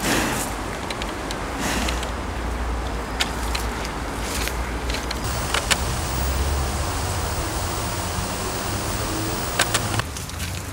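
Steady outdoor background of road traffic, a continuous rumbling hiss, with scattered sharp clicks and knocks through it.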